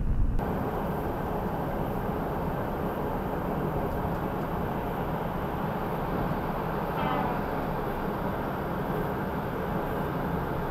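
Steady road and engine noise from inside a vehicle cruising on a motorway, with a thin high whine throughout. A brief rising pitched sound comes about seven seconds in.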